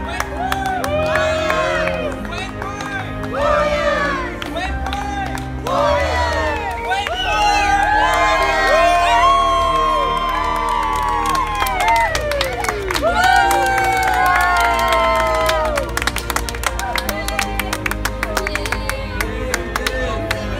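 Background music with a crowd cheering and whooping over it, and clapping in the last few seconds.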